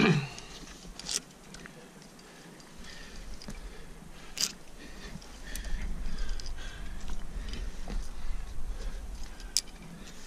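A climber's loud exhale at the start, then hands and gear moving on granite, with three sharp clinks of climbing hardware spread through. From about three seconds in, a low rumble of wind on the microphone.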